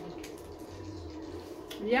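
A person chewing a mouthful of burger, with a few faint mouth clicks over a steady background hum, then a hummed "yum" near the end.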